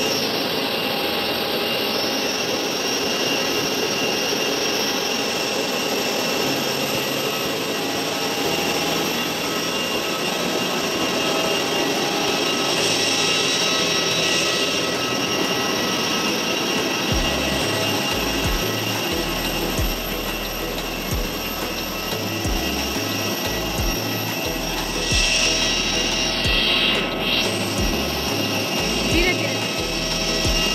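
Jet aircraft engine noise on an airport apron: a steady loud hiss with thin high whining tones. From a little past halfway, a low stepping bass line, like background music, joins it.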